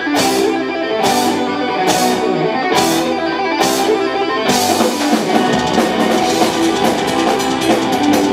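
Symphonic power metal band playing live: distorted electric guitars, bass, keyboards and drums, with a cymbal crash on each beat about once a second, then from about halfway a faster, denser drum pattern.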